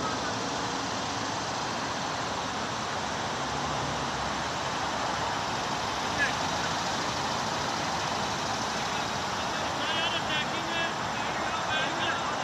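Steady outdoor background noise with distant voices from the field. A single sharp crack about six seconds in, a cricket bat striking the ball, and a run of quick high chirps near the end.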